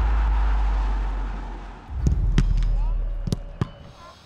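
Countdown transition sound effect: a deep booming impact rumbling and fading, a second low hit about halfway through, then a few sharp clicks near the end.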